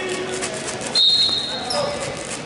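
A shrill, steady whistle sounds about a second in and lasts just under a second, over shouting voices of coaches and spectators around a wrestling mat.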